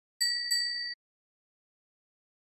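A chime sound effect: two quick dings at the same bright pitch, about a third of a second apart. The second rings on briefly and is cut off short, under a second in.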